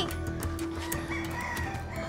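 A rooster crowing faintly in the background, one crow about a second in, over soft background music.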